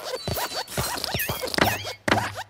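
Cartoon sound effects of animated desk lamps hopping: a quick run of short thumps and clicks, with squeaky chirps that dip and rise in pitch in the second half.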